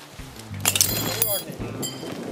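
Metal tent peg scraping and clinking against rock as it is forced into stony scree that will not take it, with a short voiced exclamation in the middle. A sharp metallic clink near the end.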